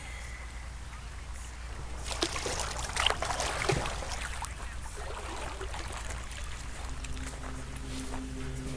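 Water splashing and sloshing in a galvanized stock-tank pool as a person climbs out, a burst of splashes and drips from about two seconds in, settling after about five seconds.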